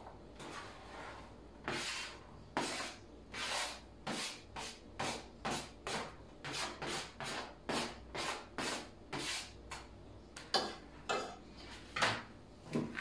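A knife blade scraping chopped onion off a cutting board into a frying pan. It makes a run of short rasping strokes that quicken to about three a second, then two more after a short pause near the end.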